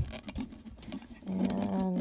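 Light clicks and taps of a plastic tumbler and its lid being handled and turned over in the hands. A woman's voice comes in near the end.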